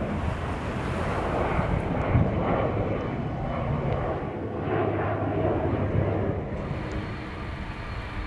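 Jet airliner engines giving a steady drone, with a faint steady tone running through it.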